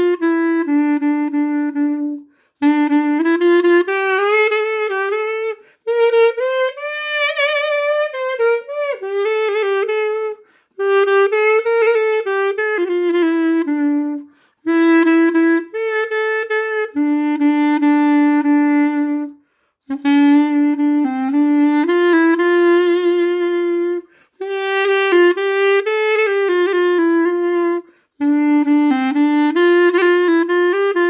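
Classic Xaphoon, a single-reed pocket saxophone, playing a slow solo klezmer nigun melody. The melody comes in phrases of a few seconds each, broken by short breath pauses, with vibrato on some held notes.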